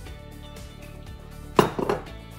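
Background music, with a sharp knock about a second and a half in and a few quick smaller knocks after it: a glass olive-oil bottle being set down on a granite countertop.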